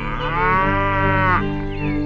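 A single long farm-animal call, a little over a second, rising slightly in pitch, over background music.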